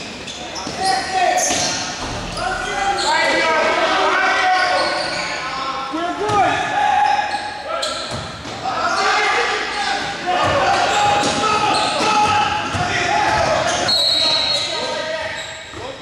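Indoor basketball game: a basketball bouncing on the hardwood-style gym court amid players' voices calling out, with the echo of a large hall.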